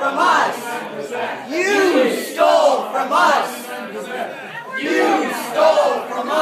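A crowd of protesters chanting a slogan in unison, loud shouted phrases repeating about every one and a half seconds.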